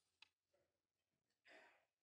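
Near silence: room tone, with a faint click about a quarter second in and a brief soft noise about a second and a half in.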